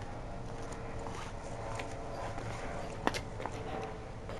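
Footsteps of a man walking on a paved driveway: a few scattered steps over a faint steady outdoor background, the sharpest about three seconds in.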